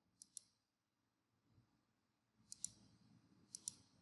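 Faint computer mouse clicks in three quick pairs, each a button press and release: one pair near the start and two more pairs close together near the end.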